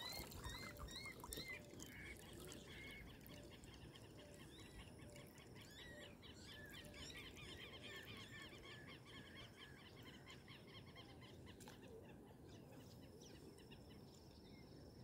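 Faint birdsong from several birds: many short, arched chirping calls repeating several times a second, with a lower call about twice a second, thinning out near the end.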